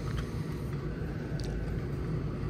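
Steady low mechanical hum, with a couple of faint ticks about one and a half seconds in.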